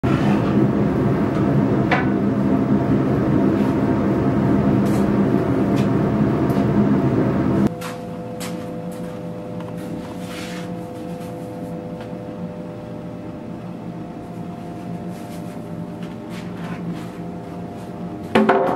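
A workshop machine runs with a loud, steady hum and cuts off abruptly about eight seconds in. What is left is a faint steady hum with a few light clicks and knocks.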